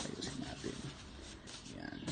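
Cotton pillowcases and sheets rustling as a hand pats and smooths bed pillows, with irregular soft brushing and patting sounds and a brief indistinct murmur of voice.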